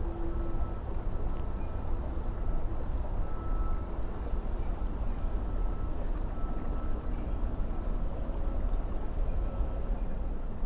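Steady rush of running creek water, heavy and even in the low end.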